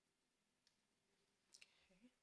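Near silence with a few faint, short clicks, one about two-thirds of a second in and a close pair about a second and a half in.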